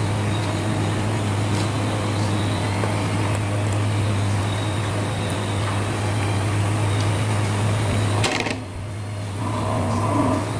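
A steady low electrical hum with a hiss of background noise, like a motor or appliance running. It cuts out suddenly for about a second a little after eight seconds in, then comes back.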